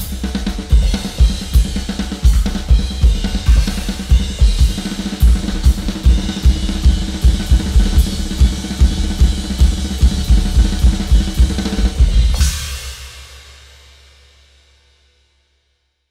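Tama drum kit with Zildjian cymbals played in a fast, busy groove, with bass drum, snare, hi-hat and cymbal strokes. The playing stops about twelve seconds in on a final cymbal crash that rings and dies away to silence.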